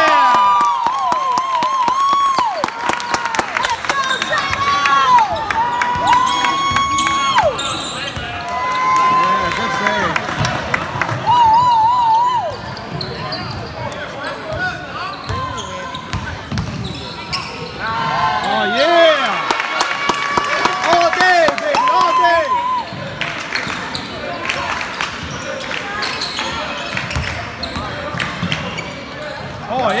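A basketball being dribbled on a hardwood gym floor, with players' sneakers squeaking sharply and repeatedly on the court in clusters.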